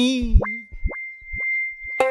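Film soundtrack sound effect: three quick rising blips over a single steady high tone held for about a second and a half, just after the tail of a sung line.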